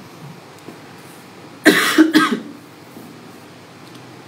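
A woman coughing: one short fit of two or three coughs about a second and a half in.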